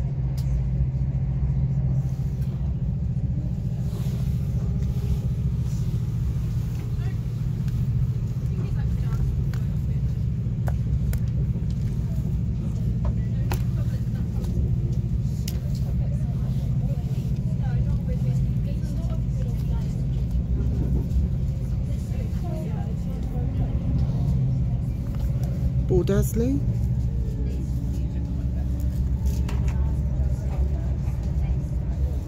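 Steady low rumble of a diesel-hauled passenger train running at speed, heard from inside the coach, with occasional faint clicks from the track.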